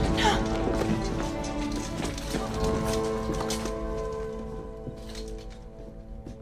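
Tense orchestral film score with long held notes that slowly fade, over a few scattered clicks and knocks.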